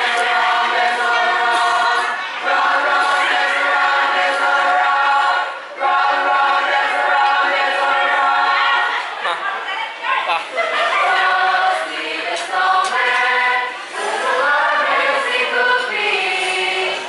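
A choir singing, with long held chords that shift every second or two.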